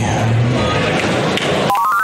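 Quick run of electronic beeps stepping up in pitch near the end, from a 30 lb combat robot signalling that it is ready. Steady arena noise sits underneath.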